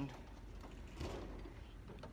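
Faint outdoor background noise with a brief soft rustle about a second in.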